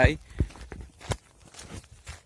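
A few separate footsteps on a dirt track, single thuds spaced unevenly over the pause, picked up by a handheld phone.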